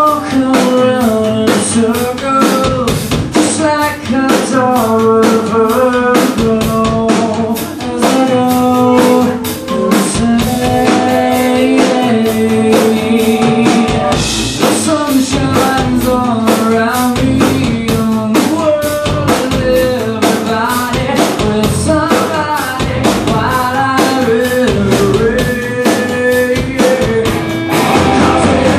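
Rock band playing live through amplifiers: drum kit keeping a steady beat under electric guitars and bass, loud throughout.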